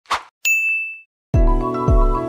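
A short click, then a single bright bell-like ding that rings for about half a second and fades. Near the end, music with a steady beat of about two a second comes in.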